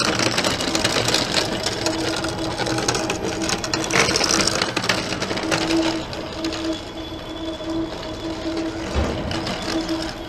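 Small electric-drive robot cart running across asphalt: a motor hum that comes and goes over a continuous rattle of its wheels and frame.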